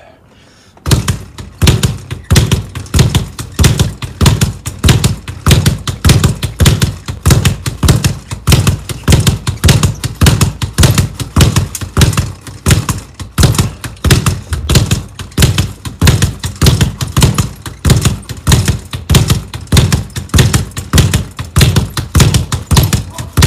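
Speed bag being punched in a fast, steady rhythm, the bag rattling against its rebound platform; it starts about a second in.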